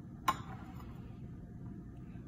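A single sharp click about a third of a second in, over faint room tone.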